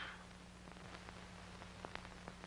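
Low hiss and steady hum of an old film soundtrack, with a few faint scattered clicks.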